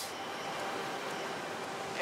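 Steady rushing of a whitewater mountain creek pouring over boulders.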